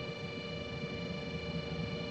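Steady background hum with several fixed high tones sounding together over a low rumble, and no distinct events.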